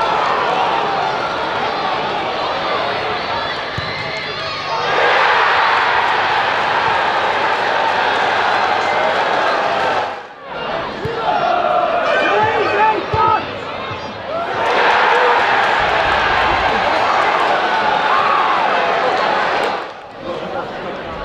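Football crowd in the stands, a steady noise of voices that swells into loud cheering about five seconds in, dips sharply around ten seconds, and swells into cheering again near fifteen seconds, with individual shouts in between.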